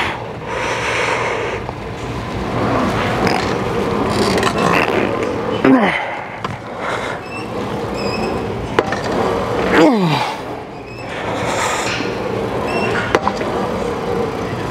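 Plate-loaded hack squat machine's sled rolling up and down its rails through a set of reps. Twice, about six and ten seconds in, there is a strained sound that falls in pitch.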